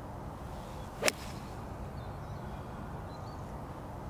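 A single sharp crack about a second in as a golf iron strikes the ball off the turf during a full swing, over a steady outdoor background hiss.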